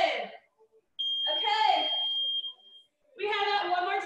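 Digital interval timer giving one long, steady high beep about a second in, held for nearly two seconds, as its countdown hits zero at the end of a 45-second work interval. A voice talks over and around the beep.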